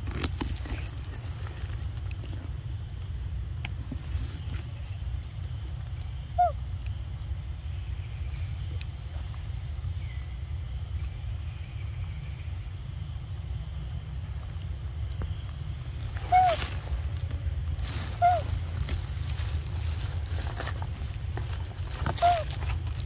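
A steady low rumble with four brief, high chirp-like calls spread through it, each a quick rise and fall in pitch, and these calls are the loudest sounds.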